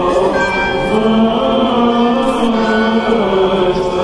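Orthodox liturgical chant sung by several voices together, in long held notes that move slowly from pitch to pitch.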